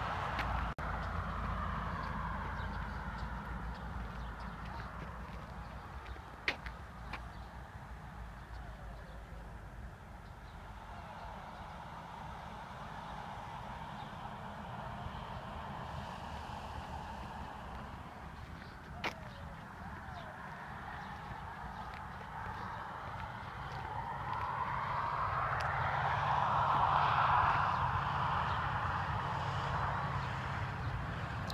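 Distant road traffic: a steady low rumble, with a passing vehicle that swells and fades over the last several seconds. Two sharp clicks come about six and nineteen seconds in.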